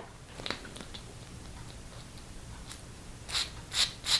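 Perfume atomizer on a Lalique L'Amour eau de parfum bottle spraying twice near the end, two short hisses about half a second apart, giving a thick spray.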